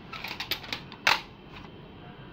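Plastic audio cassette cases being handled and shuffled: a few light clicks, then one sharper clack about a second in.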